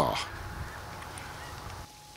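Steady outdoor background noise with no distinct events, following a voice trailing off at the start; it cuts off abruptly just before the end.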